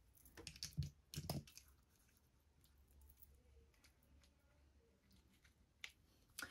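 Mostly near silence, with a few faint clicks and rustles in the first second and a half as hair is handled and a plastic claw clip is fastened, and one small click near the end.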